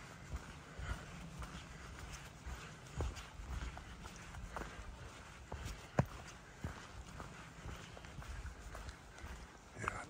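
A hiker's footsteps on a leaf-covered dirt trail: irregular crunches and clicks of boots on leaves, twigs and soil, the sharpest about six seconds in, over a low rumble.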